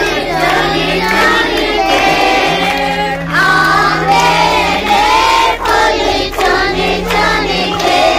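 Group of children singing a Christian worship song in unison, led by a woman, over a low held note that changes pitch a few times.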